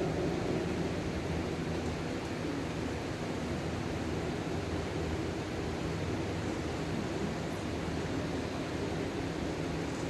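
Steady, even hiss with a faint low hum, the kind made by an electric pedestal fan running in a large, quiet room.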